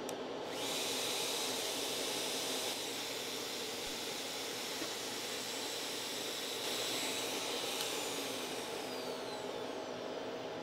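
Shaper Origin handheld CNC router running: a steady rushing noise with a high whine that switches on about half a second in. Near the end a whine falls in pitch as the machine winds down.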